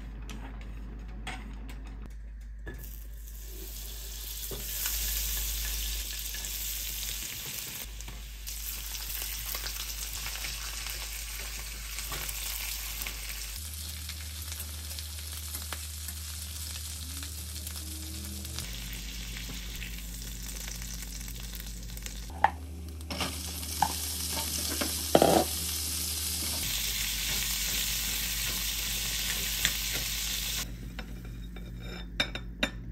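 Shrimp and then green beans sizzling in hot oil in a small stainless steel frying pan, stirred and turned with chopsticks. There are a few sharp clicks about three-quarters of the way through, from chopsticks knocking on the pan.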